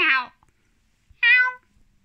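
Long-haired domestic cat meowing twice, about a second apart: the first meow short and falling in pitch, the second a little longer and level.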